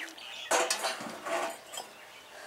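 Metal water pot clanking and scraping on a stone shelf as it is set down: a loud clatter about half a second in, a smaller one a moment later, then it dies away.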